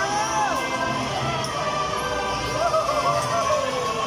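Carousel ride music playing.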